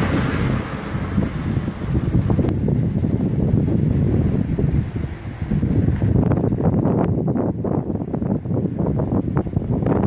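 Wind buffeting the camera's microphone, a loud, uneven low rumble. About six seconds in it turns to short irregular crackles.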